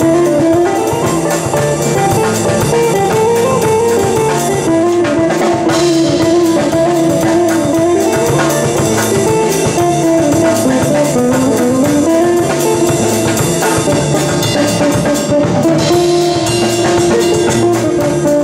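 Live music: a Stick-style touch instrument played by two-handed tapping, a melody line climbing and falling over a repeating bass figure, with a drum kit keeping time.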